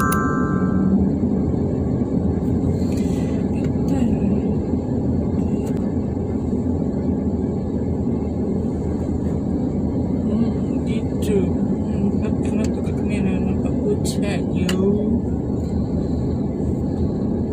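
Steady low rumble of car cabin noise, with faint voice sounds and a few light clicks. A short electronic alert tone sounds at the very start.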